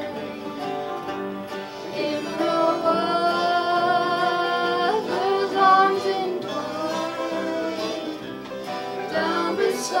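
Live acoustic folk band playing a country ballad in C: strummed acoustic guitars and bass guitar under singing and a harmonica, with long held notes.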